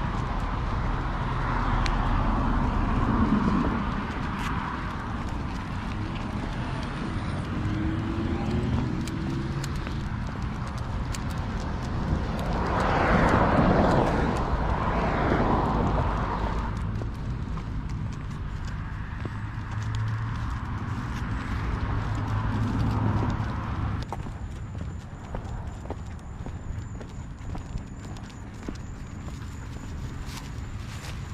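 Rhythmic footsteps on pavement as a person walks with two huskies on a leash, with leash and clothing rustle. A louder rushing stretch comes about halfway through, then the sound eases off near the end.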